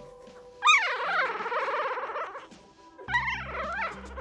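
Newborn dachshund puppy crying: a sharp high cry about half a second in that wavers and trails off over a couple of seconds, then another short cry near the end. Background music comes in under it.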